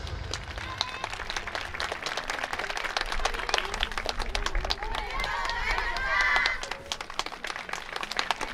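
Audience applause: many hands clapping, with voices calling out from the crowd, loudest about five to six seconds in.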